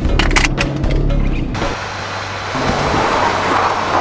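Film soundtrack of music and vehicle noise. A few sharp clicks come in the first second and a half. The sound then switches suddenly to a steady rushing noise, like a car on the road, that swells toward the end.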